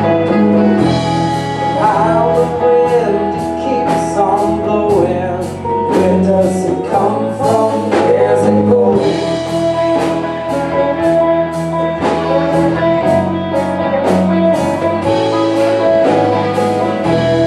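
Live blues-funk band playing a song: electric guitars, bass, drum kit and congas keep a steady beat under a saxophone and a woman singing.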